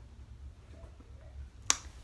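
A single short, sharp click about three-quarters of the way through a pause, over a faint steady low hum.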